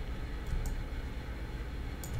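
Steady low electrical hum of the recording background, with two faint mouse clicks a little over half a second in.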